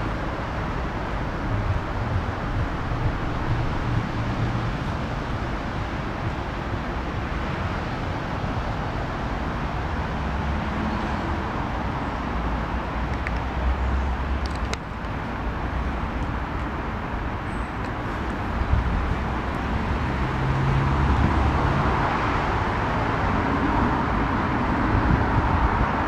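Steady outdoor background noise with irregular low rumbling, growing a little louder over the last few seconds.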